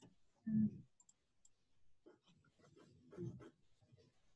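Faint clicking of a computer mouse and desk handling while windows are resized, with one short, louder low sound about half a second in.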